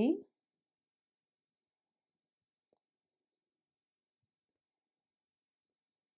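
Near silence, after a woman's voice trails off in the first moment.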